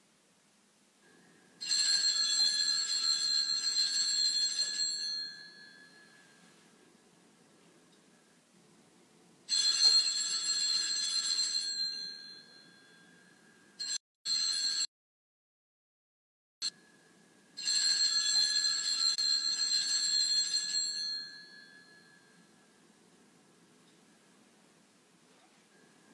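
Altar (Sanctus) bells shaken three times, each a ringing of about three seconds with a bright jangle of several high tones: the bell rung at the consecration and elevation of the Host.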